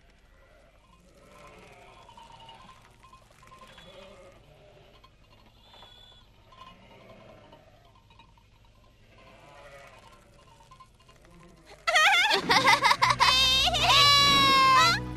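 Sheep bleating faintly several times. Loud music with a bright melody starts about twelve seconds in.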